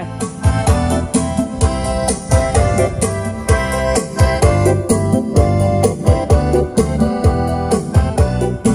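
Music streamed from a phone over Bluetooth, played through a powered mixer's built-in amplifier into a loudspeaker: a song with a steady beat.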